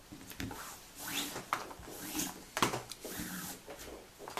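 Nylon paracord being drawn through the crossings of a Turk's head on a pegged jig board: short swishes of cord rubbing on cord, with a few sharp light clicks and taps against the board.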